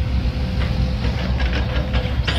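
Volvo hydraulic excavator's diesel engine running under load with a steady low drone and a faint whine, while the bucket scrapes and knocks in loose soil a few times.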